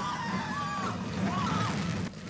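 Horror-film soundtrack playing back: tense music under a woman's long, wavering cries as two people struggle.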